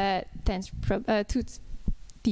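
Speech: a voice finishing a sentence with a drawn-out vowel and a few more syllables, then trailing off. A few soft low thumps come through the pauses.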